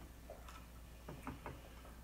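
Faint, irregular mouth clicks and smacks of someone chewing a bite of cheesecake, a few soft ticks over low room hum.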